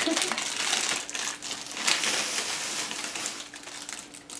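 Crinkly plastic candy wrapper being handled and turned over, a continuous crackling rustle.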